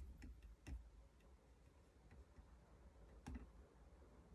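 Near silence with faint, irregular clicks and soft knocks: a few in the first second, then one about three seconds in.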